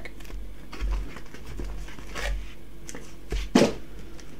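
Foil booster-pack wrappers rustling and crinkling as a stack of trading-card packs is pulled from the cardboard box and handled, in scattered soft strokes with a louder crinkle about three and a half seconds in.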